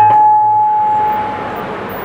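The tabla stops and a single steady high note, held on the harmonium, carries on alone for about a second and a half before fading out, leaving a soft fading wash of sound through the PA.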